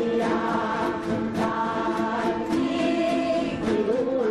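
A massed ensemble of yueqin (Taiwanese moon lutes) plucked together, accompanying a large group singing one melody in unison in the style of a Taiwanese exhortation song (勸世歌).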